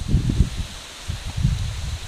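Hands rubbing ghee and oil into flour in a stainless steel bowl, crumbling the clumpy dough in a soft, uneven rustling and scrunching, stroke after stroke.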